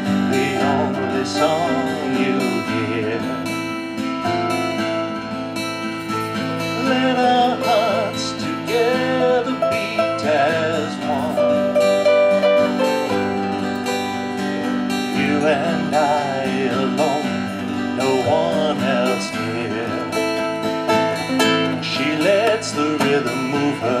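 Classical guitar playing an instrumental passage of a live song, with a wavering melody line above it that comes and goes.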